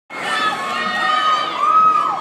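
Arena crowd cheering and shouting, many voices at once, cutting in suddenly at the start. One loud high cry rises above the crowd near the end.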